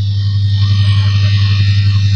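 LE 420 auto edger running, a steady low motor hum with higher steady whining tones, as its wheel edges a plastic lens blank.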